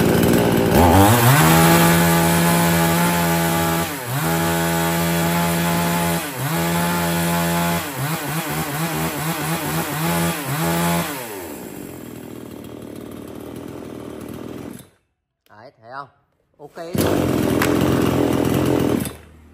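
Two-stroke petrol chainsaw with a 55 cm bar being revved. The throttle is opened and held high for two to three seconds at a time, four times, with short dips between. It drops back to idle about eleven seconds in and stops about four seconds later, then is running again near the end.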